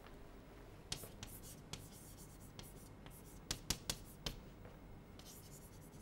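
Chalk writing on a blackboard: faint scratchy strokes and sharp taps of the chalk against the board. They start about a second in and bunch into a quick run of taps a little past halfway.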